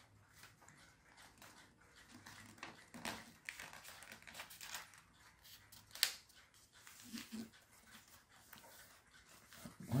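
Faint rustling and creasing of stiff printed paper folded by hand into a paper plane, with a few sharper crinkles and clicks, the clearest about three and six seconds in.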